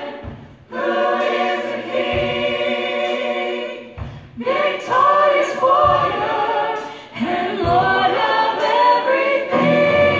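Church choir singing in full harmony, in long held phrases with brief breaks between them, with low bass notes underneath.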